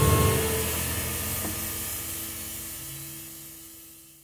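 The band's final chord dying away at the end of the piece: a cymbal's hiss and a couple of held low notes fade steadily into silence.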